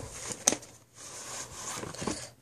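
A VHS tape case being handled: one sharp click about half a second in, then faint rustling and scraping.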